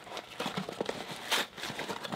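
Cardboard mailing box being opened by hand: irregular crinkles and crackles of cardboard and packing tape, with one louder rustle a little past halfway.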